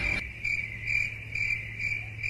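Cricket chirping in short, evenly spaced pulses, about three a second, over a steady low hum.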